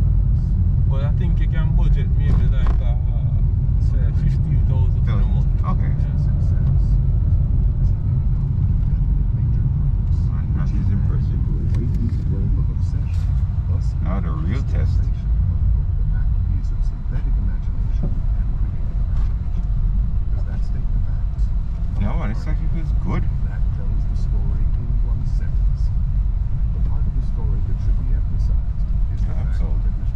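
Steady low rumble of road and drivetrain noise inside the cabin of a Honda Grace hybrid cruising at highway speed, with low voices a few times.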